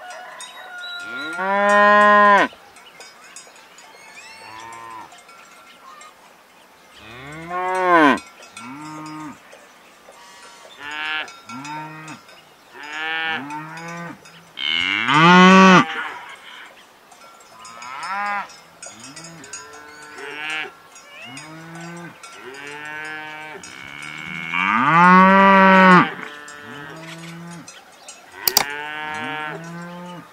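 Cattle mooing over and over: a run of separate calls, some short and some long and loud, each rising and then falling in pitch.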